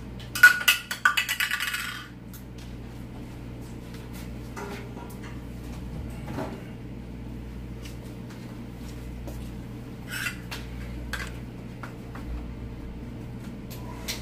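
A rapid clatter of hard objects for about a second and a half near the start, as hair styling tools are picked up and handled. After it come a few faint knocks over a low, steady room background.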